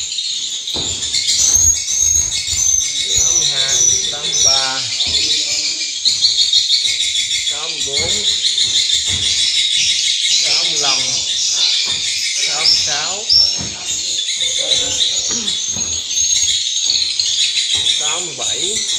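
Swiftlet calls played through tweeter speakers mounted on the nesting beams: a dense, continuous high twittering that does not let up.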